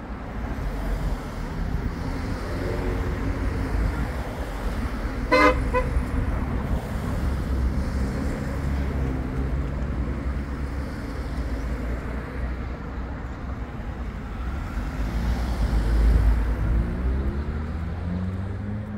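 Cars running past on a road, with one short car horn toot about five seconds in. A passing car grows louder near the end.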